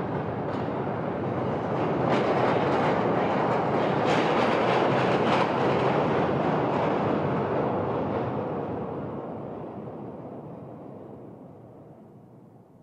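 Subway train running past a station platform, its wheels clacking over the rail joints. It is loudest in the middle, then fades steadily away over the last few seconds as the train leaves.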